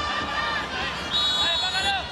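Stadium crowd singing and chanting, with long held notes over a steady roar, as heard through a television match broadcast.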